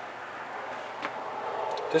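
Steady background hiss with a faint click about a second in, growing a little louder towards the end; the truck's engine is off.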